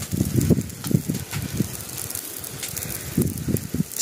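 Dry grass and banana plants burning with a light, irregular crackle, under uneven low gusts of wind buffeting the microphone.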